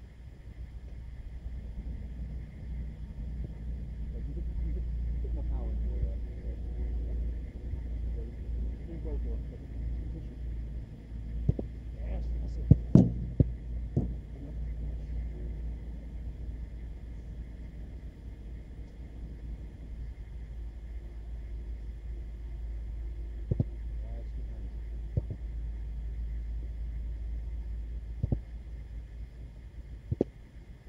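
A football being struck during goalkeeper drills: a quick cluster of sharp thuds about halfway through, then single strikes spaced a few seconds apart near the end. A steady low rumble runs underneath, with faint, indistinct voices early on.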